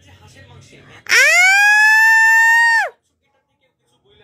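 A domestic cat's single long, loud meow starting about a second in, sliding up in pitch, held steady for nearly two seconds, then dropping in pitch as it ends.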